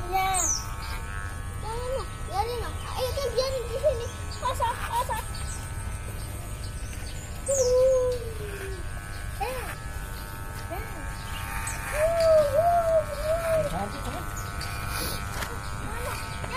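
Electric hair clippers buzzing steadily as they cut a man's hair, with voices in the background and a few short high bird chirps.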